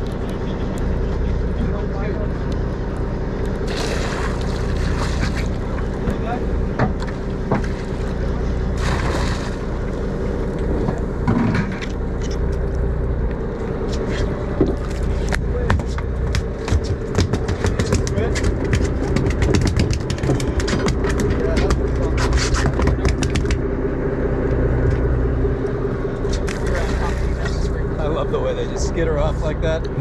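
A boat's engine runs steadily with a constant low hum. Scattered clicks and knocks of fishing tackle being handled sound over it.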